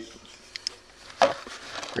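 Handling noise from a flashlight and its battery being picked up and moved about by hand: a couple of faint clicks about half a second in and a soft knock a little after a second.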